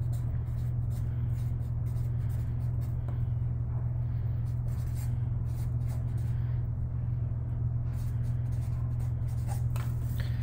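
Felt-tip marker writing on paper: a run of short scratchy strokes as letters are written. A steady low hum runs underneath and is louder than the strokes.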